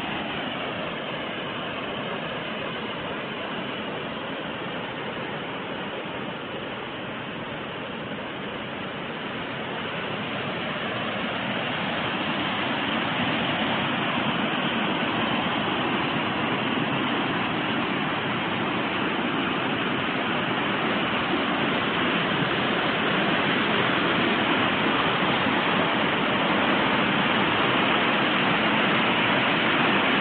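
Spring-fed seasonal waterfall cascading into a pool: a steady rush of falling water that grows louder from about ten seconds in.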